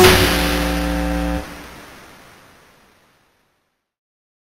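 The last notes of an electronic drum & bass track: a cymbal crash over a held chord and bass. The bass cuts off about a second and a half in, and the remaining tail fades out to silence.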